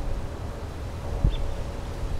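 Wind rumbling on the microphone outdoors, with one short low thump a little over a second in.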